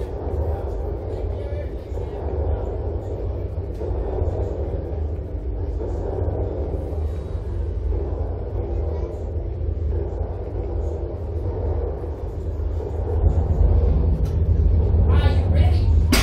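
A steady low rumble with faint, indistinct voices in the background. It grows louder a few seconds before the end, and a sharp click comes right at the end.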